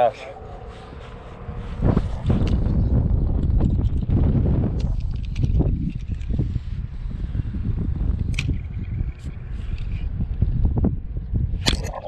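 Wind buffeting the microphone in a steady low rumble, with a few sharp knocks from the push pole as the skiff is poled along.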